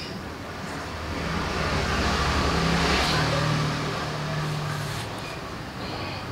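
A motor vehicle passing by: its engine hum and road noise swell to a peak about three seconds in, then fade.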